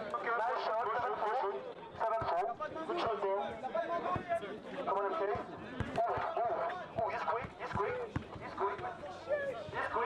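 Players and onlookers talking over one another, with a basketball bouncing on a hard court now and then.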